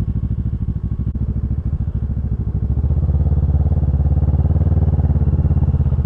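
Sport motorcycle engine running at low speed with a fast, even throb, growing a little louder about two and a half seconds in.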